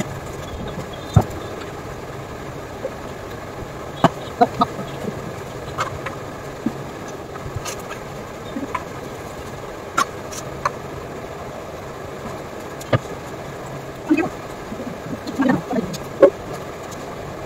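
Steady whir of an electric pedestal fan, with scattered sharp clicks and taps and a few short sounds near the end.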